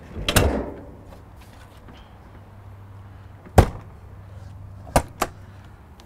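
A heavy pull-out tray rolling shut on its slides into a motorhome's basement storage compartment with a clunk, then a sharp latch click as a compartment door is shut about three and a half seconds in, and two quick latch clicks near the end as the next compartment door is opened.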